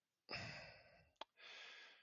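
Faint breathing close to a headset microphone: a soft sigh-like exhale about a third of a second in, a single faint click a little after one second, and a fainter breath near the end, otherwise near silence.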